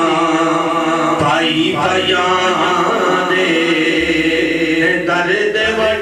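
A man's voice chanting melodically into a microphone, in long held notes that waver slightly, in the sung style of verse recited within a sermon.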